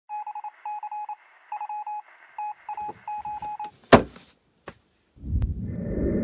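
Edited intro sound effects: rapid electronic beeps at one pitch, in short groups, for the first three and a half seconds, then a loud sharp hit about four seconds in, a faint click, and a burst of low rumbling noise near the end.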